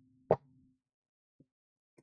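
A deck of tarot cards handled and shuffled in the hands: one sharp card click about a third of a second in, then a faint tick about a second later.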